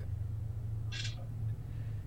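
A pause in a call with a steady low hum underneath. About a second in there is one short breathy hiss, like a sniff or quick breath.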